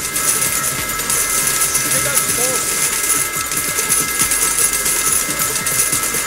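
Pachinko parlor din: a loud, dense clatter of steel pachinko balls running through rows of machines, with steady electronic tones from the machines sounding over it.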